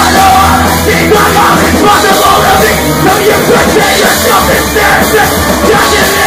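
Punk band playing a song live at full volume in a garage: distorted electric guitar and drums pounding without a break, with a voice yelling over the music.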